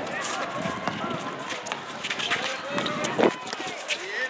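Players' and onlookers' voices calling out over running footsteps on a concrete basketball court, with scattered sharp knocks and one louder knock about three seconds in.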